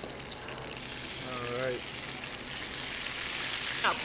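Turkey, green beans and maitake mushrooms sizzling in ghee in a hot cast iron skillet; the sizzle gets sharply louder about a second in and then holds steady. A short hummed vocal sound comes shortly after.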